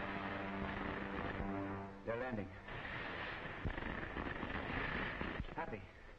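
Old film serial soundtrack: an orchestral score holds a sustained chord for about two seconds. A brief voice follows, then a noisy rushing stretch with a couple of sharp thuds, sound effects under the music.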